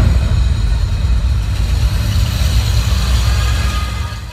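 Loud, steady low bass rumble from an arena sound system, with a noisy wash above it, as the music's melody drops away at the close of a live stage number. It fades out at the very end.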